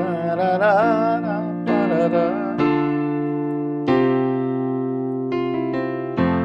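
Electric piano sound from a digital keyboard playing sustained chords of a slow worship song in F major, starting on a B-flat major chord. A man's voice sings along for the first two and a half seconds, then the keys carry on alone, with new chords struck about halfway, again near four seconds and again near the end.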